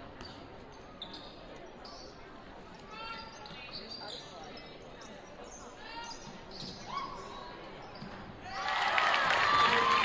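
Basketball bouncing on a hardwood gym floor and sneakers squeaking during play. About eight and a half seconds in, the crowd breaks into loud cheering as the home team sinks a three-pointer.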